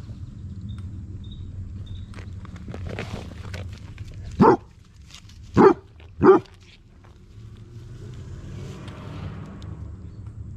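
Basset hound barking: three short, loud barks in the middle, the last two close together.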